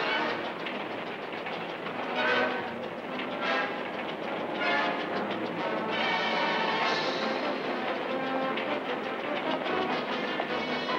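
Steam train running, its wheels clattering on the rails, mixed with an orchestral film score.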